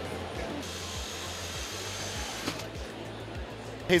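Background music with a steady low beat. A high, whirring hiss joins it from about half a second in until about two and a half seconds.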